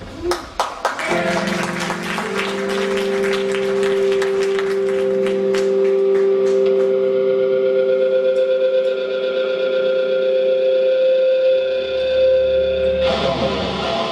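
Electric guitar through effects opening a song live: a few quick picked notes, then long held notes ringing steadily. About a second before the end, a fuller, louder strummed band part comes in.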